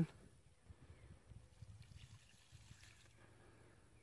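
Quiet outdoor background: a faint, uneven low rumble with a few soft ticks, and no clear sound standing out.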